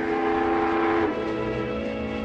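Riverboat steam whistle blowing one long, steady blast of several notes at once. Its higher notes drop out about a second in, and a lower note holds on.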